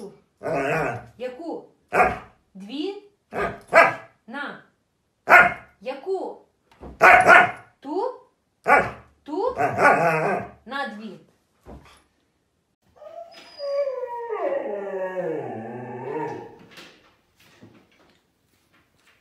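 Siberian husky vocalizing: a run of about a dozen short calls that bend up and down in pitch, then, after a brief pause, one longer call that falls steadily in pitch.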